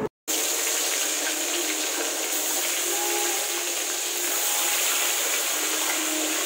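Salted fish pieces sizzling steadily in hot oil in a steel kadai, starting a moment in after a brief silence.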